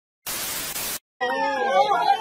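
A burst of TV static hiss, under a second long, that cuts off abruptly; a person's voice starts shortly after.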